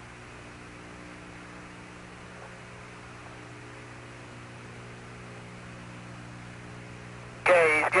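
Steady hiss with a low, unchanging hum from the Apollo 16 lunar-surface radio link, an open channel between transmissions. A man's voice comes in over the radio near the end.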